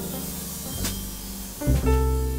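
Yamaha upright piano and plucked upright double bass playing together live. A deep bass note comes in strongly near the end.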